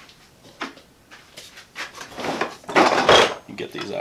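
Hard plastic organizer bins knocking and scraping against a plastic tool box as they are lifted out and set down. There are a few knocks about a second and a half in, then a busier run of clatter.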